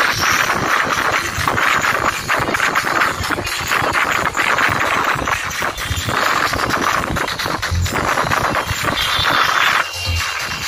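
Loud music blaring from an outdoor DJ sound system, with a low bass under a harsh, dense upper band that swells and eases every couple of seconds.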